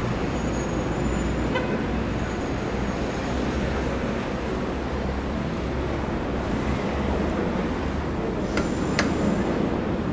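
City street traffic noise: cars and taxis running along the road, a steady rumble of engines and tyres. Two short sharp clicks sound near the end.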